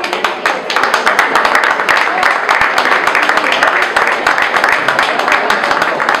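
Audience applauding: many hands clapping steadily after a prize winner is named.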